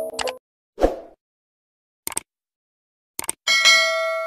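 Animated-intro sound effects: a short pop about a second in, a click, a quick double click, then a bright bell ding that rings on to the end.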